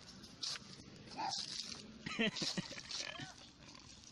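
Small dogs whining and yipping: several short high cries that bend up and down in pitch, bunched in the middle.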